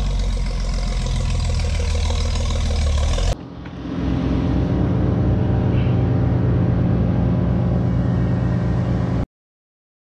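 Engine running steadily. About a third of the way in it cuts to a lower engine sound with an even pulsing of about three beats a second, which stops abruptly near the end.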